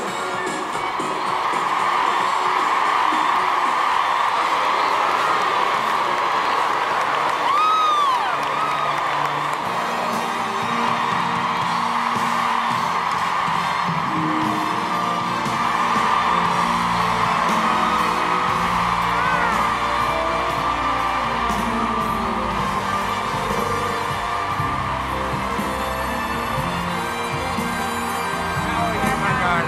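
A large crowd cheering and applauding, with one whoop rising and falling about eight seconds in. Music comes in under the cheering about ten seconds in.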